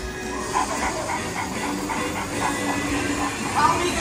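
Ride show soundtrack: recorded cartoon dog character voices with dog barking, over background music, played from the animatronic dog scene.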